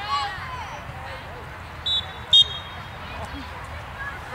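Referee's whistle blown in two short blasts about half a second apart near the middle, the second louder, over faint sideline voices.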